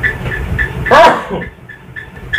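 A dog yelps once about a second in, a short high cry that rises and falls in pitch. A faint high chirp repeats about four times a second behind it.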